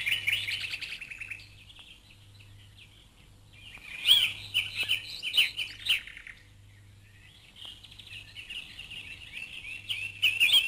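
Small birds chirping and twittering in quick, busy bouts, three spells of song with short lulls between them.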